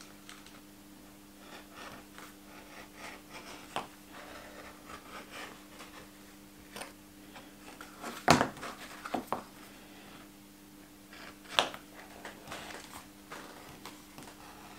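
Small woodworking gouge shaving the edge of a stitched, multi-layer leather sheath: faint, intermittent cuts and scrapes, with a couple of sharper clicks in the second half.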